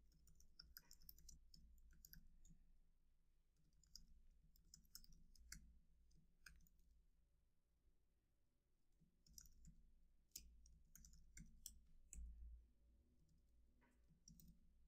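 Faint, scattered clicks of typing on a computer keyboard, a keystroke here and there with long gaps, then a short run of keystrokes near the end.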